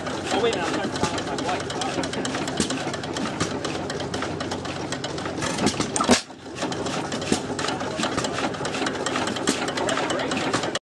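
1918 Domestic antique stationary gas engine running, with a fast, even mechanical clatter from its valve gear and moving parts. There is a sharp louder crack about six seconds in.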